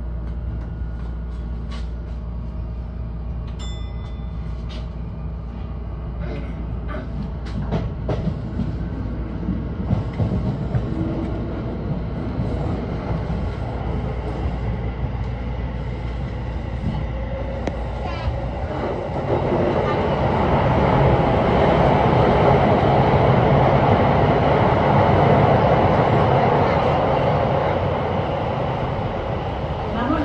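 Sotetsu 20000 series electric train running on the rails, heard from the driver's cab, its running noise getting clearly louder and fuller about two-thirds of the way through as it enters a tunnel.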